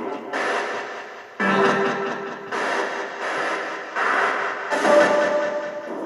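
Hissing, static-like sound that comes and goes in abrupt stretches of about a second, with a faint held tone running under some of them.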